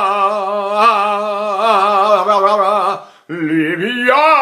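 A tenor voice singing a long held 'ah' on one pitch with vibrato, a demonstration of a note leaned on the diaphragm. It breaks off about three seconds in, and a new voiced sound begins, sliding up in pitch near the end.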